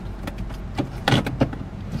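Inside a car cabin: the low hum of the engine and road, with a few irregular sharp clicks and knocks. The loudest comes about a second in.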